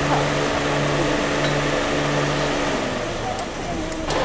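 A car engine running at idle, a steady low hum under a haze of noise, with muffled voices.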